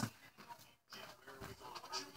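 Quiet room with a faint, pitched, voice-like sound in the second half.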